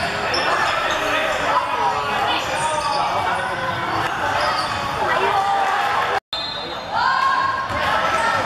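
Basketball game in an echoing sports hall: the ball bouncing on the wooden court under the shouting of young players and spectators. The sound drops out for a moment about six seconds in, at an edit.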